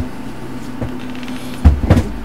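A steady low hum, then near the end a short cluster of loud, deep thumps.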